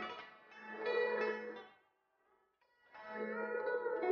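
Background music on a plucked string instrument: two melodic phrases with a brief near-silent break around the middle.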